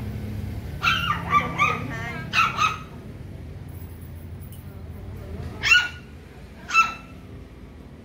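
A small dog yipping and barking in short, high-pitched calls: several quick ones in the first few seconds, then two sharper, louder barks near the end.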